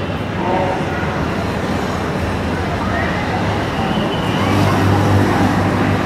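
Road traffic noise: a continuous mix of passing vehicle engines, with a low engine drone growing louder about four and a half seconds in. Faint voices are in the background.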